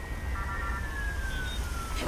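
Distant siren, one long tone falling slowly in pitch, over a steady low rumble of city traffic.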